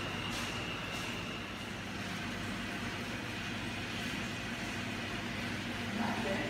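Steady hum and hiss of aquarium life-support equipment, the water pumps and air lines running the seahorse tanks, with a few soft ticks in the first second.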